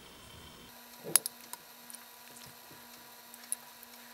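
A few light clicks of kitchenware, the sharpest about a second in, over a faint steady hum, as egg custard mixture is poured from a glass jug into foil tart shells on a metal baking sheet.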